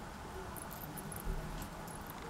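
Faint handling noise of satin ribbon being wrapped around a foam flip-flop strap: soft rustling with a few light ticks around the middle, over a low steady background.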